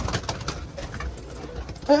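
Domestic pigeons cooing in a loft, with a short flurry of wing flaps and rustling in the first half-second as one pigeon is grabbed by hand.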